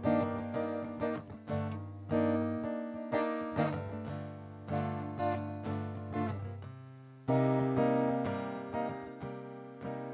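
Solo acoustic guitar playing a song's instrumental introduction: chords struck about twice a second, each ringing and fading, with a louder chord about seven seconds in.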